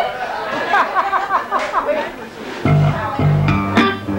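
Voices and chatter, then about two-thirds of the way in the band starts a slow blues number, with held bass and guitar notes.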